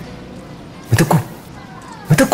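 A person's voice in two short bursts that fall in pitch, about a second in and again at the end.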